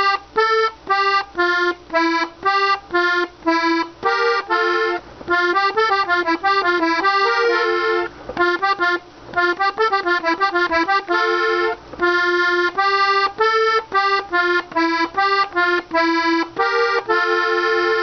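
Hohner Corona II Classic diatonic button accordion tuned in G, played slowly: a melody in short, separated notes, with quicker runs of notes about a third of the way in and again just past the middle.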